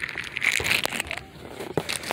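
A plastic bag packed with small lidded plastic containers crinkling and crackling as it is handled, with scattered small clicks, busiest in the first second.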